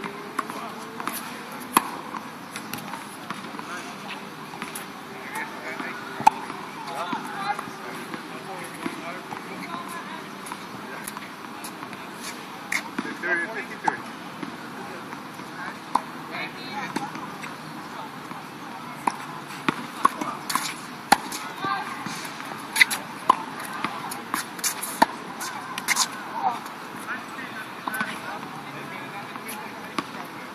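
Tennis ball struck by rackets and bouncing on an outdoor hard court: scattered sharp pops through the play, coming thickest in a quick run of hits past the middle, over a steady background hum.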